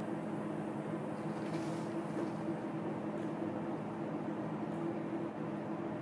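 Steady low hum with a faint hiss: room tone, with no distinct event.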